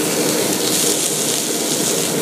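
Okonomiyaki frying on a hot iron teppan griddle, a steady sizzle.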